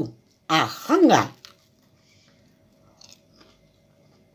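A woman's short drawn-out vocal sound about half a second in, then a few faint crunches near the end from a crisp, freshly fried breaded tuna croquette.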